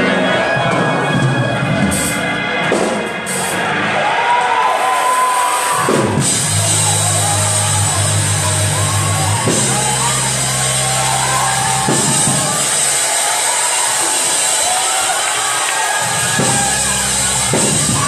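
Live gospel church band music with drums and sustained bass notes, with a congregation shouting, whooping and cheering over it.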